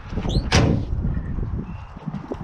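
Pickup tailgate being shut: a short squeak, then a single sharp bang about half a second in.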